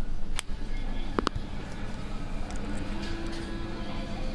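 Shop ambience: a steady low hum with faint voices, broken by a few sharp clicks, one just under half a second in and two just over a second in.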